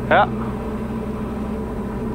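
Steady low drone of a Diamond DA40 light aircraft's engine and propeller heard from inside the cabin on final approach.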